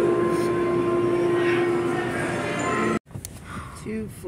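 Busy aquarium-hall ambience: background chatter of visitors over a steady low hum. It cuts off abruptly about three seconds in, giving way to quieter sound with a faint voice.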